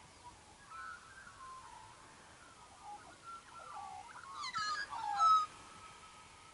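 Birds calling with warbling, gliding phrases, then a louder burst of descending calls about four and a half seconds in.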